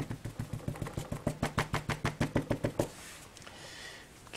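Rubber stamp being inked by rapid light dabbing against an ink pad, about nine taps a second for nearly three seconds, then stopping.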